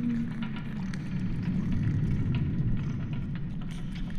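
Designed science-fiction ambience: a steady low rumble with scattered small clicks and crackles over it. A low tone gliding down in pitch fades out just after the start.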